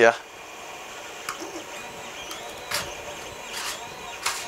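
3D-printed plastic spool lid being twisted loose by hand against thick cable ties: a few faint plastic scrapes and clicks.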